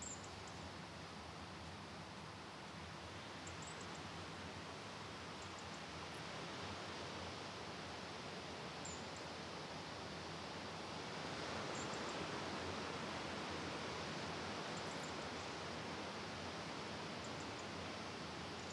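Faint steady wash of surf from the sea below, swelling a little about eleven seconds in, with a few tiny high ticks over it.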